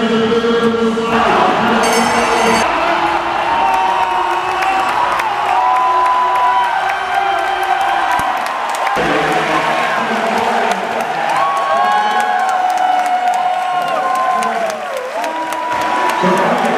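A large crowd cheering and shouting at a track-cycling sprint finish, with many voices overlapping and rising and falling in pitch. There is a dense patter of claps or clicks, and the low rumble drops out abruptly about nine seconds in.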